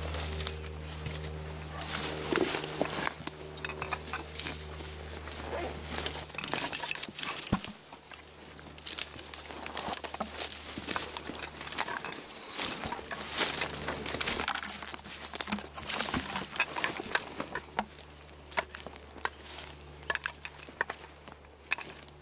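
Footsteps crunching through dry brush and dead grass, with twigs and branches rustling against clothing: an irregular run of crackles and snaps.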